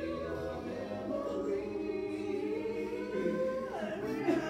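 A choir singing in long held notes, the chords shifting only a few times, with a low bass note dropping out about half a second in.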